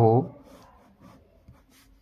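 Pen drawing short strokes on notebook paper, faint scratchy sounds about every half second.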